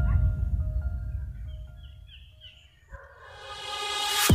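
Background music fading out, then a few short, high-pitched yelps from a dog around the middle. Near the end a rising swell leads into new music.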